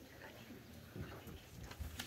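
Faint footsteps and shuffling of people moving about a quiet room, with a few soft low thumps.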